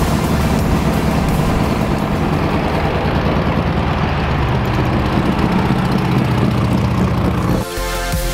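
Classic VW Beetle's air-cooled flat-four engine running as the car drives, a steady low rumble. It cuts off suddenly near the end, giving way to electronic music.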